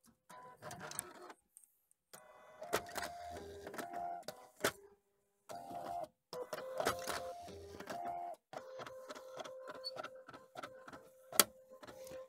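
Canon BJC-70 bubble jet printer's mechanism running in stop-start runs of pitched motor whirring, with a few sharp clicks, as it starts a test print.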